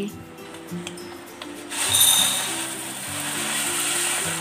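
Crisp fried whole moong beans poured from a paper-lined plate into a bowl: a dense rattling pour that starts about two seconds in, over soft background music.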